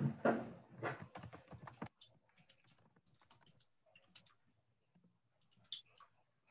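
Computer keyboard typing: a louder run of key clicks with a word spoken over it in the first two seconds, then scattered, fainter single key presses at an uneven pace.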